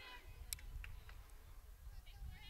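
Faint outdoor ambience at a ballfield: a low rumble, a faint distant voice near the start, and a light click about half a second in.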